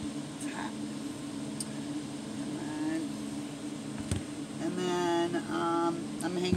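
A steady low machine hum runs throughout, with a single sharp click about four seconds in. Near the end, a woman's voice holds a note for about a second.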